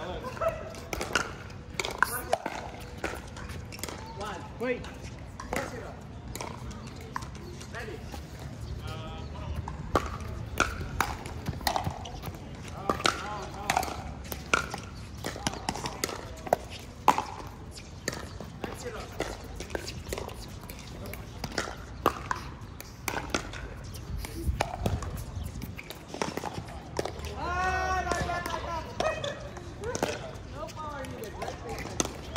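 Pickleball play: sharp, irregular pops of paddles striking the plastic ball and the ball bouncing on the court, with players' voices in between and a drawn-out call near the end.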